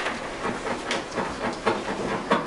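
Paper sheets being shuffled and handled near a desk microphone: a run of small, irregular clicks and rustles.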